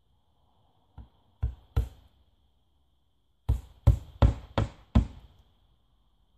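Hammer driving nails into a cedar siding board: a light tap, two strikes, then a run of five strikes at about three a second.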